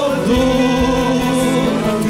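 Group of voices singing a Christian worship song with a live praise band, holding long notes over a steady drum beat.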